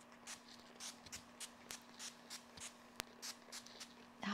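Faint, rapid short hisses from a pump-spray bottle of facial mineral water, about four or five puffs a second, with one sharp click about three seconds in.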